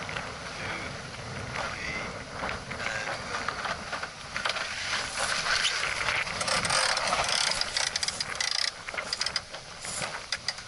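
Sailing boat's sheets and blocks being worked through a tack: a fast run of clicks and rattles of rope and fittings, busiest from about four seconds in until near the end, over wind and water noise.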